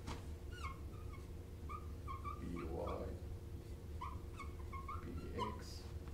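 Dry-erase marker squeaking on a whiteboard as it writes, a string of short, high chirps in quick bursts.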